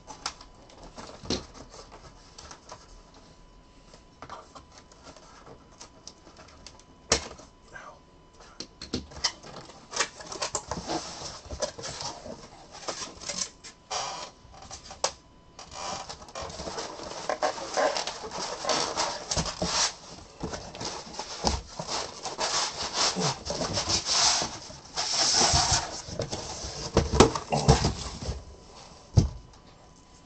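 Cardboard box being slit along its edge with a blade and then pulled open by hand: scattered sharp clicks and short scrapes at first, then a long stretch of dense rubbing, scraping and tearing of cardboard as the flaps are forced apart and the case inside is slid out.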